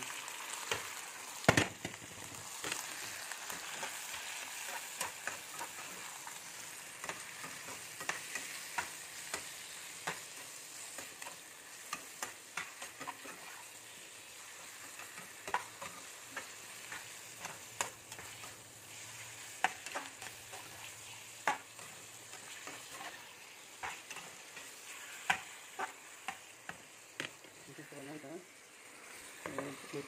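Chopped meat and tomato frying with a steady sizzle in a pan, while a metal slotted spatula stirs them, clicking and scraping against the pan many times. A sharp knock about a second and a half in is the loudest sound.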